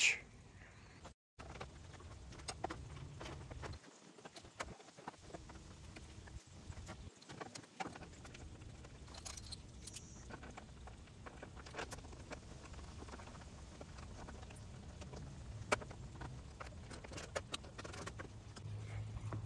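Faint, scattered clicks and taps of hand work on the truck's front end as the rubber hood guard and hood latch are refitted. A slightly louder click comes near the end.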